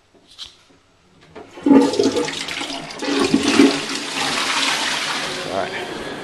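Toilet flushing: a loud rush of water that starts suddenly about a second and a half in and runs on with gurgling surges.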